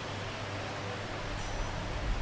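Steady background hiss with a low electrical hum, with no speech or music. A low rumble comes in about a second in and grows toward the end.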